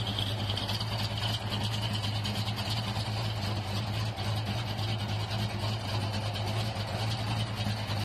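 Plymouth Barracuda's 440 big-block V8 idling steadily, with a low, even exhaust note.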